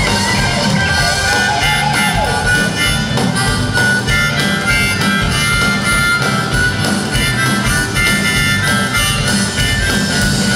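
Harmonica played into a microphone, a bluesy rock-and-roll solo over a military band's backing with a steady bass line and beat.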